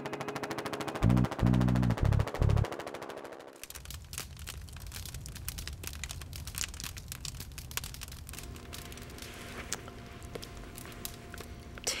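Music with a fast, fluttering pulse that cuts off about three and a half seconds in. Then a wood fire crackles in a fireplace, with irregular sharp snaps and pops over a low rumble.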